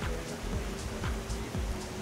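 Steady rain falling, heard as an even hiss under background music.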